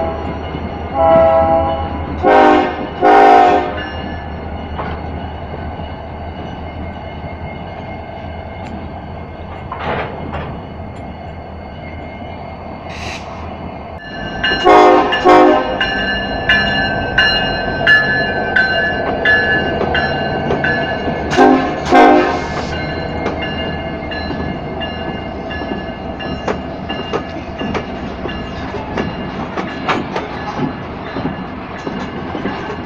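Diesel locomotive horn sounding short blasts, mostly in pairs: near the start, about fifteen seconds in and about twenty-two seconds in. Underneath, the diesel engines of Ferromex locomotives, including an EMD SD70ACe, run steadily as they roll past. From about the middle on, a steady high whine joins the engine sound.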